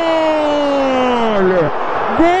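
Radio football commentator's long drawn-out goal cry: one held shouted note that slides slowly down in pitch and breaks off near the end, with crowd noise underneath.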